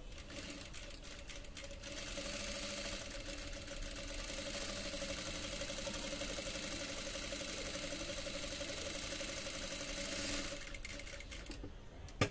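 Industrial sewing machine stitching fabric: a steady motor whine under rapid needle ticking. It picks up about two seconds in, runs at an even speed, then slows and stops shortly before the end.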